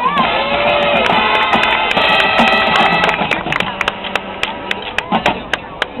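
Marching band music: sustained brass-like chords for the first few seconds, then a series of sharp percussion taps that get sparser and quieter toward the end.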